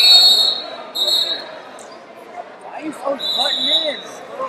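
Referee whistles blowing across a large wrestling hall: a loud short blast at the start, another about a second in, and a longer one near the end. Voices and the hubbub of the hall run underneath.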